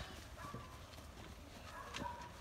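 Faint footsteps and clothing rustle of a small group walking, with a sharper tick near the end and faint voices in the background.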